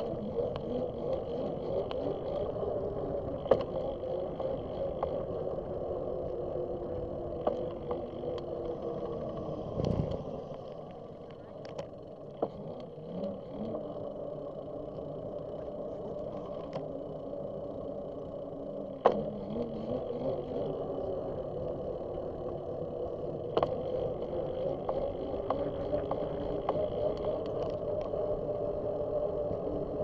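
Bicycle rolling along a paved path, heard from a bike-mounted camera: a steady hum from tyres and drivetrain with scattered sharp clicks. About ten seconds in there is a short low rumble, then it runs quieter for a few seconds before the hum returns.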